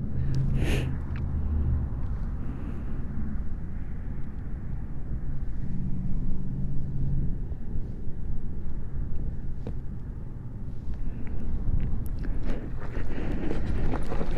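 Electric beach cruiser rolling over loose desert gravel, with a steady low rumble of tyre noise and wind on the microphone. A faint low hum comes in for the first two seconds and again around six seconds in.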